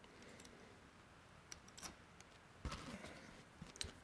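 Very faint, sparse clicks of small grinder parts being handled and fitted onto the axle, a few at a time, against near silence.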